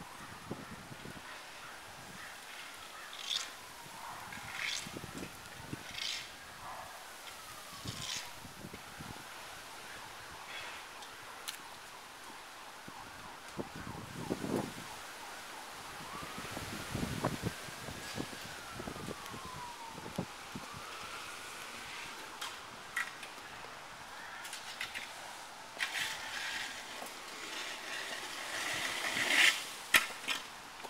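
Faint emergency-vehicle siren on a slow wail, its pitch rising and falling over several seconds at a time, with scattered close clicks and scuffs.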